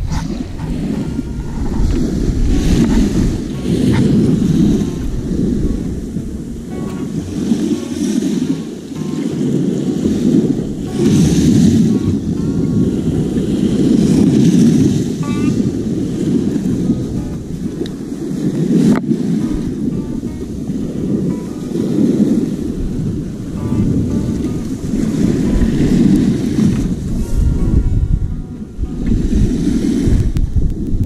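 Sea surf breaking and washing up the shore, swelling every few seconds, with wind buffeting the microphone.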